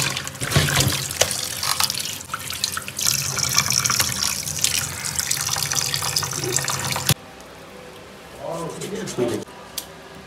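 Tap water running and splashing into a metal basin of raw meat as the chunks are washed by hand. The water sound cuts off suddenly about seven seconds in.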